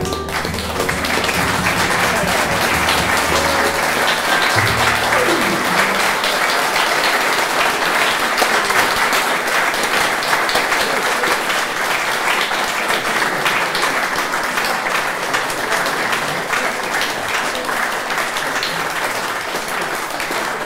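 Club audience applauding steadily. Low bass notes ring out underneath for the first five or six seconds, then die away.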